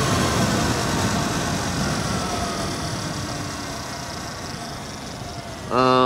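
Wind rush and tyre noise from a Sur-Ron electric dirt bike at speed, with a faint electric-motor whine that falls in pitch as the bike slows down; everything gradually gets quieter.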